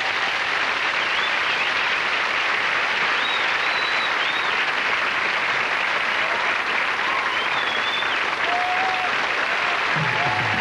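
Studio audience applauding steadily at the end of a song.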